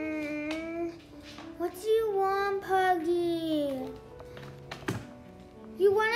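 A child's voice making two long, drawn-out wordless sounds, the second sliding down in pitch at its end, over soft background music of steady held notes. A short click comes about five seconds in.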